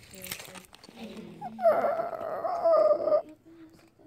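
A high-pitched whining voice held for about a second and a half, a little after a short rustle and a lower voiced sound.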